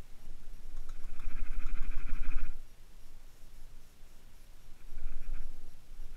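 A nail stirring powder paint in a small jar, a scratchy rustle for about two seconds, then briefly again near the end.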